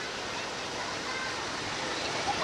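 Distant children's voices chattering over a steady rushing noise.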